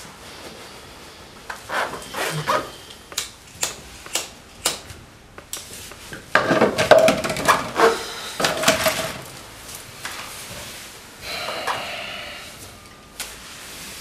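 Handling noises: a run of short, sharp clicks and knocks, then a louder, denser stretch of clattering about halfway through.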